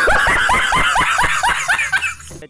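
A man laughing hard and loudly in a rapid run of high-pitched ha-ha bursts, about five a second.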